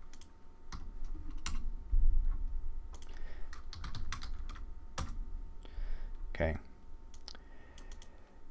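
Computer keyboard being typed on in irregular, scattered keystrokes, with a low bump about two seconds in.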